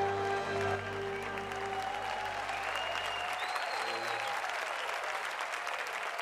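A large audience applauding as the band's sustained final chord dies away about two seconds in, then the applause carries on alone.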